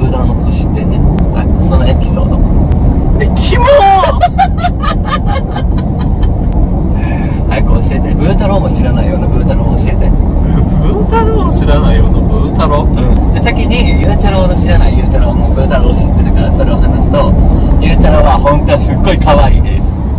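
Steady low rumble of a car driving, heard from inside the cabin, under two men's talk and laughter.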